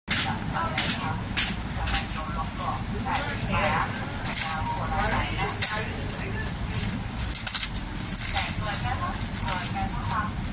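People talking indistinctly in the background, with scattered sharp clicks and crackles over a steady low rumble.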